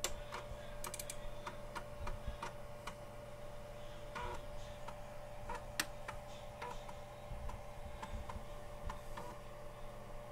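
Irregular light clicks of a computer mouse, about fifteen in ten seconds, as files are opened and dragged into a media player, over a steady low electrical hum.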